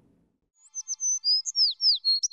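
A quick run of high, bird-like chirps and tweets, several of them short downward-sliding notes, starting about half a second in. It is clean, with nothing behind it: a bird-tweet sound effect laid over the social-media end card.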